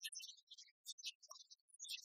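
Near silence, with faint, scattered high-pitched fragments.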